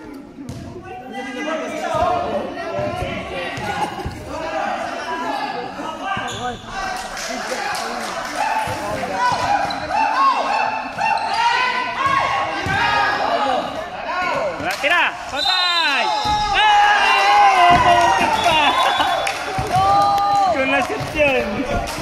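A basketball dribbled on a hard gym court, with players and spectators shouting throughout. The voices grow louder toward the end, and everything rings in the large hall.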